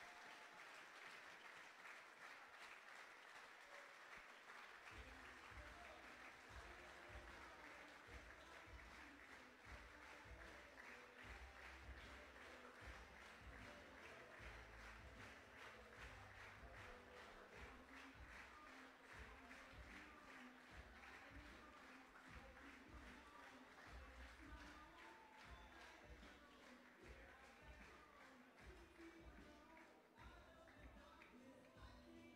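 Faint crowd applause and clapping. Music with a pulsing bass beat comes in about five seconds in and plays under it.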